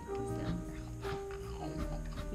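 Background music from a children's cartoon playing on a screen, with an animal-like call over it.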